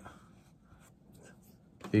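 Faint rustling of a handheld sheet of paper being shifted, with a man's speech starting again near the end.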